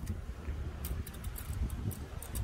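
Wind rumbling on the microphone outdoors, with a few faint clicks about a second in and again near the end.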